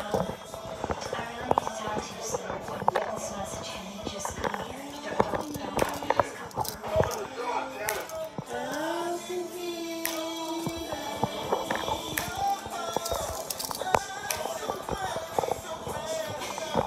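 A person humming a slow tune without words, with long held notes and gliding pitch, to call to mind a half-remembered song.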